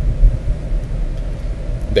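Steady low rumble with no speech over it, and a man's voice starting just at the end.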